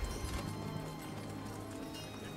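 Quiet background music with a horse's hooves clip-clopping, a riding sound effect.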